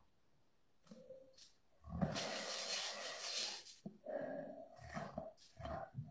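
Wordless, breathy vocal sounds and heavy exhalations from a deaf signer, close on the phone's microphone: a short one about a second in, a long one at about two seconds, and several more in the second half.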